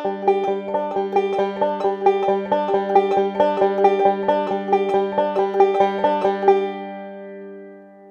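Five-string banjo picked with fingerpicks in a steady double index roll (middle, index, thumb, index repeating), even notes at about four a second. After about six and a half seconds the picking stops and the last notes are left ringing and fading.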